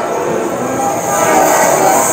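Several Hmong qeej, bamboo free-reed mouth organs, played together, each sounding a held chord of several steady tones.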